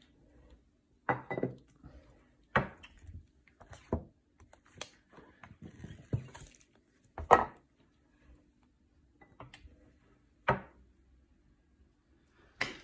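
Handling noises at a screen-printing screen: irregular sharp knocks, taps and light scrapes as paper sheets and the squeegee are worked over the inked screen and its frame. About six louder knocks stand out, the loudest about seven seconds in, over a faint low hum.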